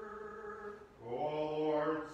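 Orthodox liturgical chant. One sustained sung note fades out about a second in, then a lower male voice begins chanting, louder, on long held tones.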